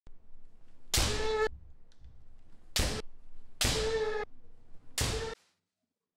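Kendo sparring: four loud bursts, bamboo shinai strikes cracking on armour together with sharp shouted kiai, some held for about half a second. The sound cuts off suddenly a little after five seconds in.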